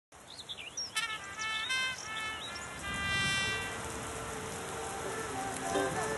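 Bird-like chirps and short whistled calls over a faint background hiss, followed by a single held note. The first plucked-string notes of a song start near the end.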